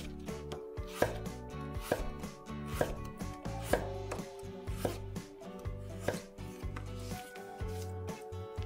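A chef's knife slicing through Korean radish (mu) onto a wooden cutting board: a series of crisp knife knocks on the board, the strongest roughly one a second with lighter strokes between.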